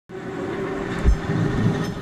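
Perley Thomas streetcar running on steel rails: a steady rumble with a hum, and a single clunk about a second in.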